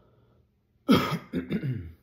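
A man coughing about a second in: one sharp, loud cough followed by two or three shorter, rougher coughs, all within about a second.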